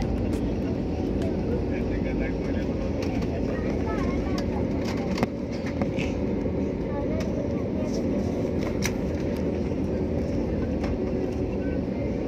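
Steady low rumble of engines and wheels heard inside the cabin of an Airbus A320-family airliner taxiing on the ground after landing. Faint passenger voices sound over it.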